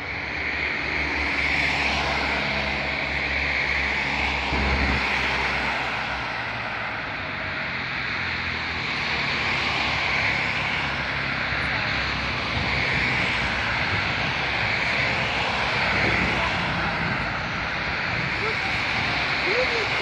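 Road traffic: cars passing with engine and tyre noise, swelling and fading as each goes by, with a low engine drone in the first few seconds.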